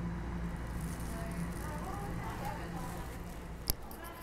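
Inside a moving subway car: the train's steady low rumble and hum, with one sharp click near the end.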